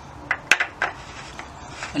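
A few light metallic clicks as a machined metal clutch-slave adapter is handled and set against the engine case, one sharper than the rest about half a second in.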